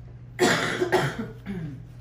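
A person coughing three times in quick succession, the first two loud and the third weaker.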